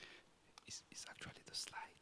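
Faint whispering: a few hushed words exchanged between two men.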